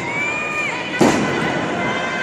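A single sharp impact about a second in, a wrestler hitting the ring in a lucha libre bout, over crowd noise. Before it, a drawn-out high-pitched shout rings out from the crowd.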